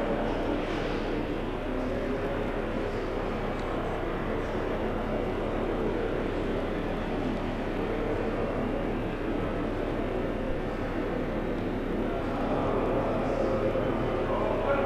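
Steady background rumble with hiss, even and unchanging throughout.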